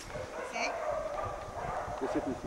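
Belgian Malinois giving a long, high whine that wavers slightly in pitch.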